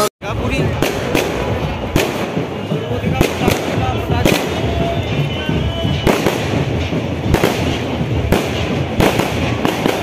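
Fireworks going off in an irregular string of sharp bangs, about one or two a second.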